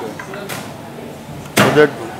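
Hands working mutton pieces through a masala marinade in a large aluminium pot, with one dull knock about half a second in. A man's voice comes in near the end.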